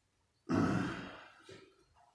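A man's single heavy exhale, a sigh, about half a second in, sudden at first and fading away over about a second.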